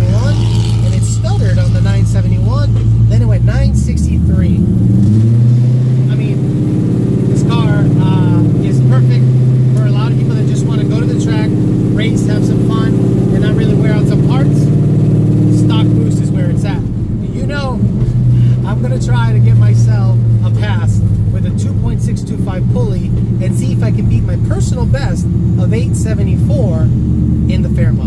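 Coyote 5.0 V8 of a 1979 Ford Fairmont heard from inside the cabin while driving: a steady engine drone whose pitch climbs about four seconds in as the car picks up speed, then holds. It eases off briefly near seventeen seconds before pulling again.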